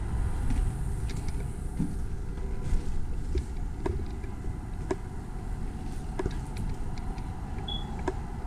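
Footsteps crunching and knocking over fire debris on a wooden floor, scattered short clicks over a steady low rumble. Near the end comes a single short high electronic beep, which a visitor takes for a fire alarm.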